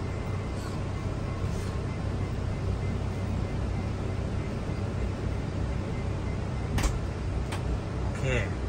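Toyota Hiace Commuter's electric sliding door closing under power over a steady low hum, with two sharp clicks near the end as it latches shut.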